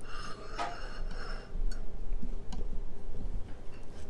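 Restaurant room noise with a low steady hum and a few light clicks and taps.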